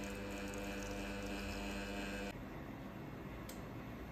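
Espresso machine pump humming steadily while a shot runs into a glass, stopping suddenly about two seconds in, after which only a faint hiss remains.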